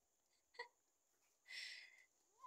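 Near silence, broken by a short faint click about half a second in and a brief hiss near the end.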